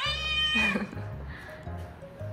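A cat's single high-pitched meow, rising at the start and then held, lasting under a second, over background music.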